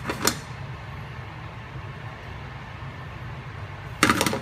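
A frying pan scrapes briefly on the metal grate of a gas range shortly after the start, over a steady low rumble.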